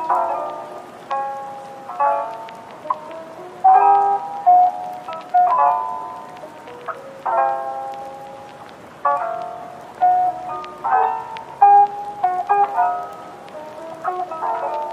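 Soft instrumental background music: chords of struck notes that ring and fade, a new one about every second, with little bass.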